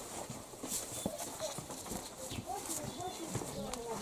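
Footsteps of several people walking across wooden floorboards, an irregular run of knocks, with faint voices in the background.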